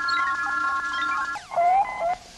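Electronic sci-fi computer-terminal sounds: several steady tones held together, then about a second and a half in a falling sweep followed by short rising warbling tones.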